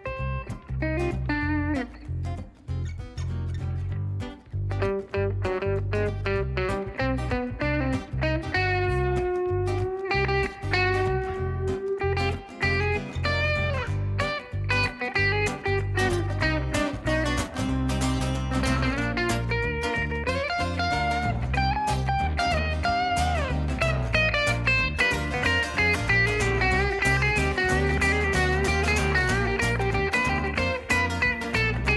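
Instrumental guitar solo in a live band performance: a lead guitar plays a melody with bent, held notes over guitar accompaniment and an electric bass line.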